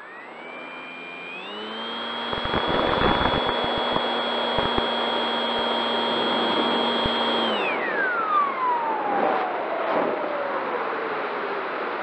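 Bixler foam plane's brushless electric motor and pusher propeller, heard from its onboard camera through wind rush. The whine climbs quickly to a steady high pitch under throttle for a practice go-around and holds for about six seconds. Then it slides smoothly down as the throttle is eased back.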